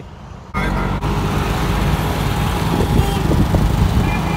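Auto-rickshaw ride heard from inside the open cab: its small engine running, with road and wind noise. The sound starts suddenly about half a second in.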